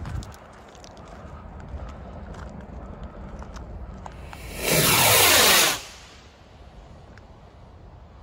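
Large firework rocket lifting off: a loud rushing whoosh a little past halfway, lasting about a second, its tone sweeping downward as it climbs away.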